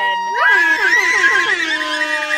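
Several voices, children and a woman, shouting and whooping together in long, high held cries, loudest from about half a second in.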